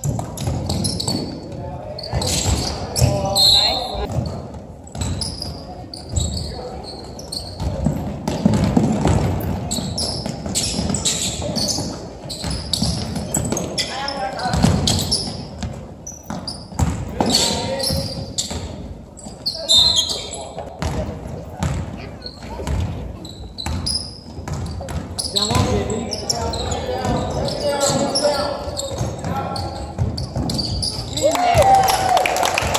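Basketball being dribbled and bounced on a hardwood gym floor during play, a run of sharp thuds echoing in a large hall, with indistinct voices of players and spectators throughout.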